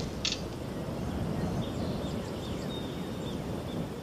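Outdoor ambience: a steady low rumble of noise, with a short click just after the start and a few faint, short high chirps about halfway through.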